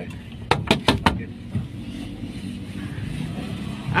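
A vehicle engine idling with a steady low rumble. A quick run of sharp clicks comes about half a second in.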